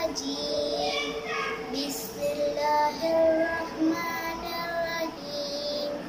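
A young girl reciting the Quran in Arabic in a melodic, chanted style, drawing out long pitched notes between short phrases.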